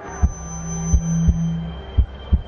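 Heartbeat sound effect: slow paired low thumps, about one pair a second, over a low steady hum that drops away near the end, marking a performer's stage nerves.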